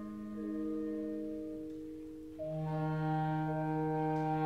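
School concert band playing a slow passage of held chords: a soft sustained chord fades away, then about two and a half seconds in a fuller chord with a low bass note enters and is held.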